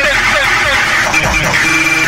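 Electronic song with a dense, distorted, voice-like lead sound whose pitch bends up and down.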